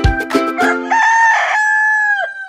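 A short jingle of plucked strings and drum beats ends about a second in. A rooster crow follows: one long, loud cock-a-doodle-doo call, held steady.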